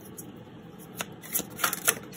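A deck of oracle cards being shuffled and handled by hand, with a few crisp card snaps from about a second in.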